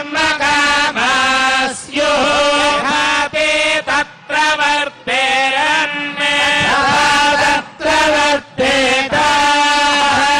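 A male priest chanting mantras into a handheld microphone, in long phrases on held notes with brief pauses between them.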